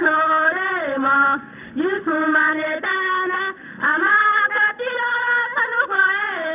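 Young girls singing a traditional song of the water ceremony, sung phrases with short breaks between them.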